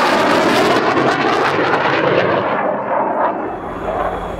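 Aircraft engine noise: a steady, loud rushing sound whose highest part dies away over the second half.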